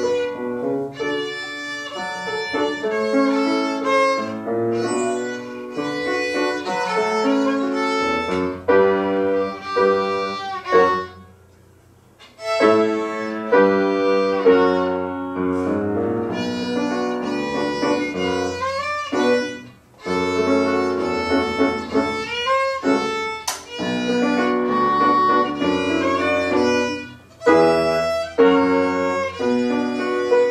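A violin bowed by a young pupil playing a melody of sustained notes, with piano accompaniment underneath. The music stops for about a second roughly twelve seconds in, then continues.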